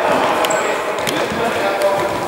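A futsal ball being dribbled and kicked on an indoor court floor: three sharp knocks spread across the two seconds, with a brief high squeak near the start, over players' voices.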